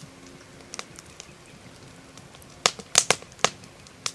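Campfire crackling: scattered sharp pops, with a cluster of louder ones about three seconds in.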